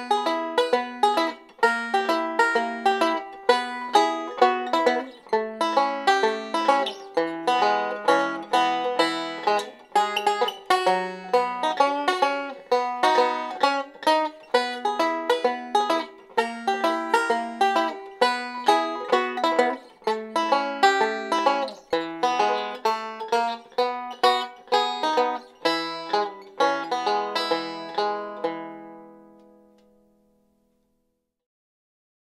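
Five-string banjo played fingerstyle in a Travis-picking pattern, the thumb keeping a steady alternating bass under pinched melody notes, in the key of E. The piece runs continuously and ends on a final chord that rings out and fades near the end.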